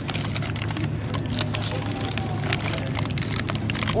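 Paper burger wrapper crinkling and rustling as hands unwrap it: many quick irregular crackles over a steady low hum.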